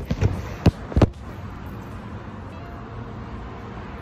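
A few sharp knocks and bumps in the first second, the loudest about a second in, typical of a phone being handled and set down. Then a steady background hum with no voices.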